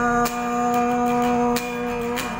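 Band music between sung lines: one long note held steady over faint, evenly spaced strokes.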